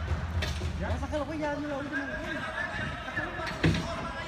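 Men's voices calling out across an indoor soccer arena, with a sharp thump of a ball being kicked near the end.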